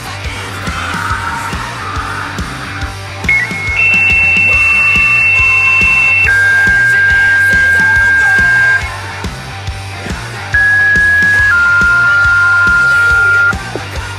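Fire dispatch paging tones over background music: two pairs of long steady beeps, each pair stepping down from a higher tone to a lower one. The first pair starts a few seconds in and the second comes near the end.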